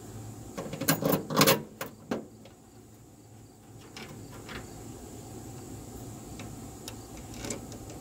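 A handful of sharp metallic clicks and knocks in the first two seconds as a Mopar electronic ignition control unit is pressed onto the bare-metal inner fender, its mounting studs going through the holes. After that come a few faint ticks.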